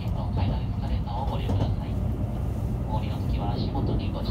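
Low, steady rumble of a train running, with a Japanese railway public-address announcement going on over it.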